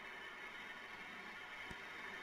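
Quiet room tone: a steady faint hiss with a low hum underneath, and one soft tick about three-quarters of the way through.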